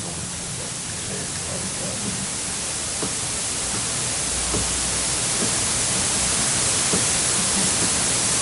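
Steady hiss of the recording's own background noise, slowly growing louder, with a few faint clicks scattered through it.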